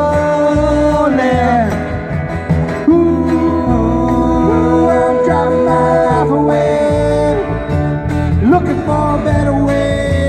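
Live band playing a country-style song on guitars and cajon, with long held sung notes that slide up into pitch.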